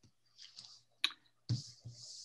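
Clicks and a thump on a remote-meeting audio line: a sharp click about a second in, then a louder thump halfway through followed by a steady hiss, over a low steady hum.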